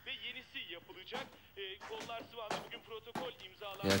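Faint voices and music low in the background, broken by about four short, sharp knocks roughly a second apart.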